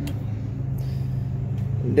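A steady low motor hum, fairly loud, like an engine running nearby; a word of speech starts right at the end.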